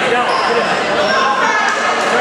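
A basketball bouncing on a hardwood gym floor during a youth basketball game, amid overlapping shouts and chatter from players and spectators in the gymnasium.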